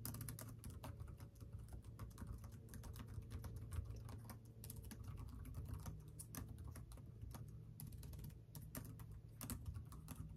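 Typing on a computer keyboard: a quick, irregular run of key clicks with short pauses, over a low steady hum.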